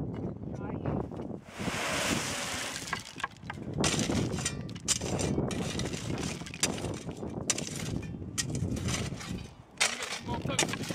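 Gravel being tipped and shovelled: a rush of pouring stone a couple of seconds in, then irregular scrapes of steel shovels and clinking of stones as gravel is spread into timber step frames.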